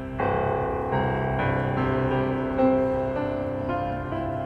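Grand piano played solo in a slow classical piece: sustained notes and chords ring on under the pedal, with a new chord or melody note struck every half second to a second.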